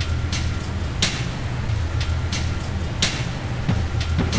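A looped background track: a steady low hum with two sharp hits that repeat in an identical cycle every two seconds.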